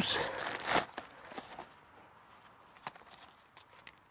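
Plastic packaging rustling as a pair of bicycle pedals is unwrapped by hand, loudest in the first second. Then a few faint clicks of the parts being handled.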